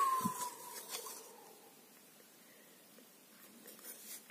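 A child's voiced sliding sound effect trailing off in a falling whistle-like tone over the first second, with a soft thump about a quarter second in. Then faint room tone with a few small ticks.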